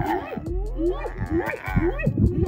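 Animal cries: many short, overlapping calls that rise and fall in pitch, several a second.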